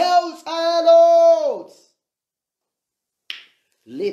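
A voice holding one long drawn-out note for about a second and a half, dropping in pitch as it fades out. Then near silence, broken by a single short, sharp click about three seconds in.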